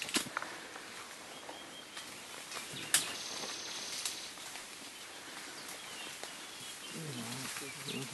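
Forest ambience: a steady hiss, one sharp click about three seconds in, then a high buzzing trill for about a second. Low murmured voices come in near the end.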